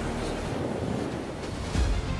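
Churning sea water and surf, a steady rushing noise, with a low thump near the end.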